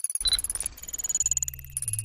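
Electronic sci-fi interface sound effects: a fast stream of high digital blips, a short high beep about a quarter second in, and a low electronic hum coming in past the middle as a loading bar fills.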